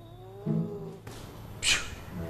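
Cat meowing, a rising call followed by a shorter lower one, then a short hissing burst near the end.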